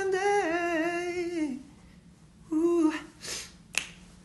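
A man singing unaccompanied, with a pitch that bends and falls away at the end of the line. After a short pause comes a brief sung note, then a breath and a single sharp click near the end.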